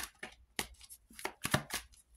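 A tarot deck being shuffled by hand: an uneven run of short, crisp card slaps, about three or four a second.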